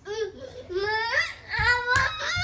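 A toddler crying in frustration, a run of wails that rise in pitch, starting at once. A sharp click comes just before the end.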